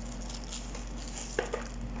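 Faint rustling and small handling noises of boxed kit contents and plastic packaging being moved, with one light knock about one and a half seconds in, over a steady low hum.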